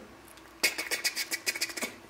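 A rapid run of short, sharp, hissy clicks, about nine a second for just over a second: a man's mouth-made imitation of a camera lens's noisy autofocus motor.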